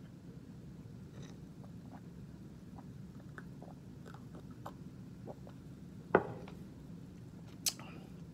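A man drinking root beer from a glass: faint small mouth and swallowing clicks over a steady low room hum, then one sharp knock about six seconds in as the glass is set down on the desk.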